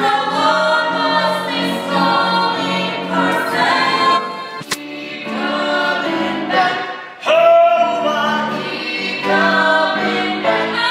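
Several voices singing a musical-theatre number together, with one sharp click about halfway through.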